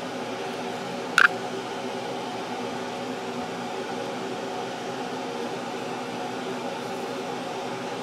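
Steady whirring hum of a room air-conditioning fan, with several steady tones running through it. One brief, sharp sound cuts in about a second in.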